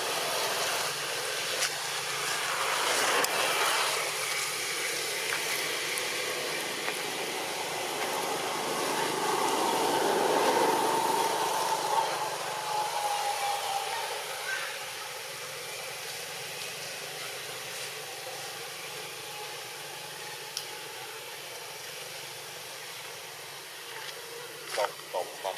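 A motor vehicle passing, its engine and tyre noise swelling and falling away about halfway through, over a steady outdoor hiss.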